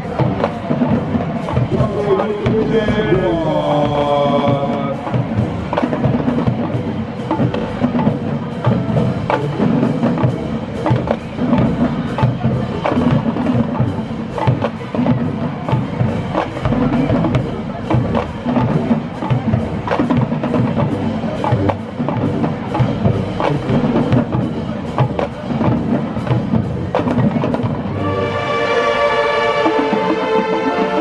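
High school marching band drumline playing a percussion feature, sharp drum and rim hits on a steady beat with quicker fills. A brief sliding tone sounds about three seconds in, and the horns come in with held chords near the end.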